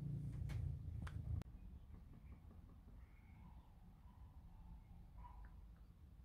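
Faint handling of a collectible figure's cardboard box, a low rumble with a few light clicks, stopping about a second and a half in; after that near silence with a few faint, short high chirps.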